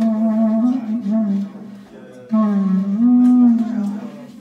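Clarinet playing a slow melody in its low register: sustained notes that slide from one pitch to the next. It drops away briefly about halfway through, then resumes.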